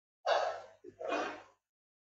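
Two short breathy exhalations close to a microphone, each about half a second long, the second following straight after the first, with a faint hum audible under them.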